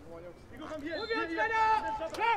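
Faint shouts of players calling to each other on a field hockey pitch, a long call in the middle and a shorter one near the end, over low outdoor background noise.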